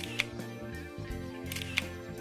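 Two camera shutter clicks, one just after the start and one near the end, over background music.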